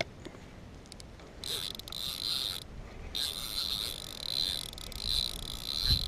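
Spinning reel whirring while a hooked fish is fought on a bent rod: a short burst of about a second, a brief pause, then a longer run of about three seconds.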